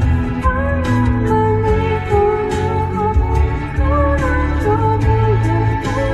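Karaoke: a pop song's backing track with a steady bass and beat, and a woman singing the melody into a microphone over it.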